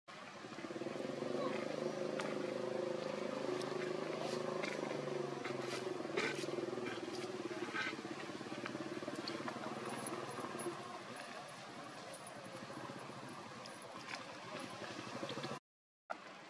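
A motor vehicle engine running steadily, fading out about eleven seconds in, with a few sharp clicks partway through.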